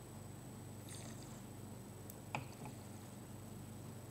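A faint slurp as wine is sipped from a glass about a second in, then a single sharp knock a little past two seconds in as the wine glass is set down on the table, over a steady low hum.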